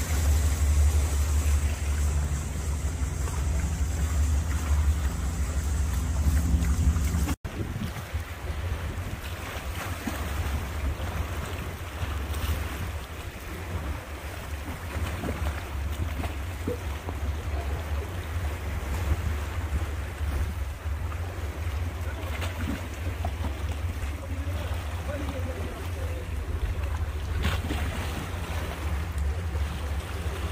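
Wind buffeting the microphone over the wash of small sea waves against shoreline rocks. The sound briefly cuts out about seven seconds in, and the wind rumble is weaker after that.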